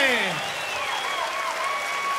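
Audience applauding and cheering, with a long falling whoop in the first half-second and some held pitched calls over the clapping.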